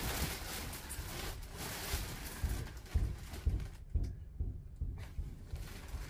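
Faint rustling of bedding and soft thumps on the mattress as a person sits down on a bed and lies back on it.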